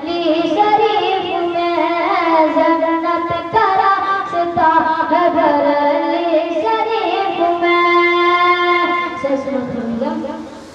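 A boy singing a naat, an Urdu devotional poem, into a microphone in long melodic phrases. The phrases glide between pitches and hold long notes, the longest and loudest near the end.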